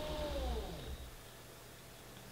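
Electric height-adjustment motor running with a steady whine, which falls in pitch as it slows and stops about a second in.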